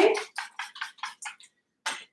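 A trigger spray bottle of coat conditioning spray spritzed in a quick run of about seven short hisses, then one louder burst near the end.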